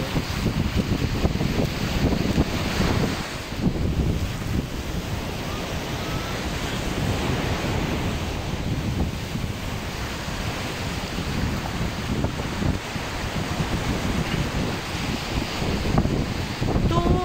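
Ocean surf breaking and washing up a sandy beach, with gusty wind buffeting the microphone.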